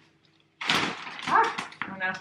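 A clear plastic dome umbrella being pushed open: the stiff PVC canopy crinkles and rustles as it unfolds, starting about half a second in.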